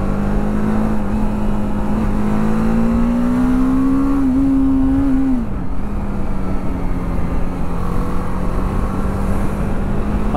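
BMW G 310 R's single-cylinder engine running under way, heard from the rider's seat with wind and road noise. The engine note climbs slowly as it accelerates, drops sharply about five seconds in, then holds steady.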